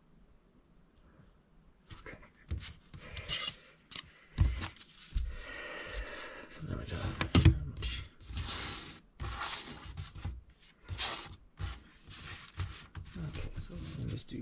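Small laser-cut plywood tiles being slid, shuffled and set down on a work surface by hand: irregular scraping with light wooden taps, starting about two seconds in.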